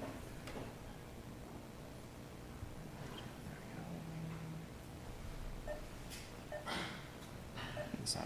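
Faint room noise with a few soft clicks and rustles, the most noticeable cluster about six to seven seconds in, and a short low hum about four seconds in.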